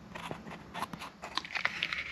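Light, irregular clicks and small scrapes of hands handling metal parts at an open motorcycle gearshift mechanism.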